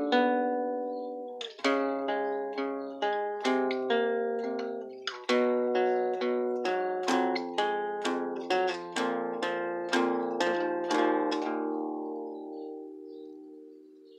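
Acoustic guitar played with single picked notes, about two a second in a slow, even pattern, with no voice. The last notes ring on and fade away over the final few seconds.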